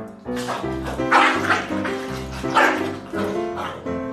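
Background music with steady notes, over which corgis bark during a scuffle: a loud burst of barking about a second in and another past the halfway point.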